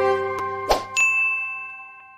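Subscribe-animation sound effects over the fading held chord of the closing theme music: a mouse click, a short swoosh, then a bright bell ding about a second in that rings out and dies away.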